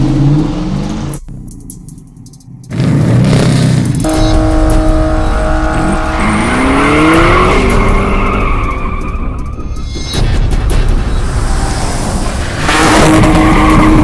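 Car engine revving with tyre squeal, mixed over background music. The pitch rises several times near the middle.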